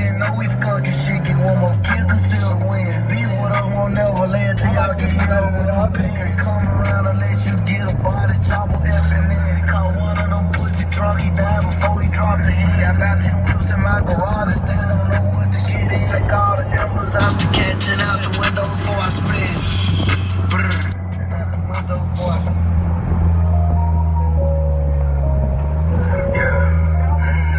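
Rap music playing from a Polaris Slingshot's dash stereo over the engine, whose low note rises and falls in pitch in the first few seconds. A loud rush of noise comes in past the middle and lasts about four seconds.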